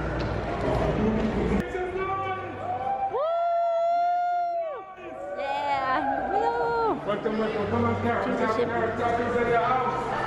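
Several people's voices talking over a crowd's chatter, with one voice drawn out in a long held call about three seconds in.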